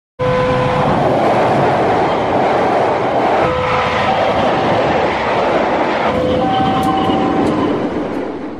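KAI CC206 diesel-electric locomotive hauling a passenger train past at speed: a loud, steady rush of engine and wheels on rail, with a few short steady tones ringing over it.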